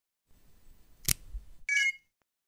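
Logo intro sound effect: a faint rustle, a sharp click about a second in, then a short bright chime that stops at the end.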